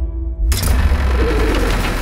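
Pigeons or doves cooing over teaser soundtrack music, with a sudden rush of noise about half a second in.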